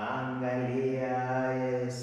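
A man's low voice singing one long held note in a Swahili worship song.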